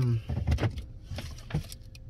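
Handling noises inside a pickup's cab: a cluster of short knocks and clicks in the first second, then two single clicks, over a steady low hum.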